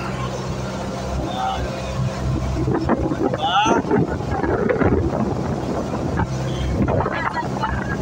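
Engine of a motorized outrigger bangka running steadily under way, a low even drone, with wind buffeting the microphone.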